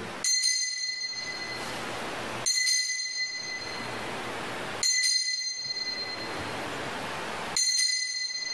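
Altar bell rung four times, about two and a half seconds apart, each strike a bright ring that fades out: the signal of the elevation of the chalice at the consecration.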